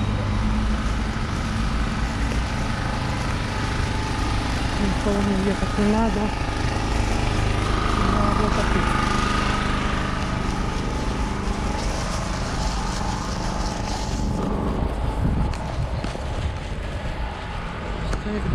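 Steady street noise of traffic on a wet city road, a continuous low rumble, with a man's voice saying a word about six seconds in.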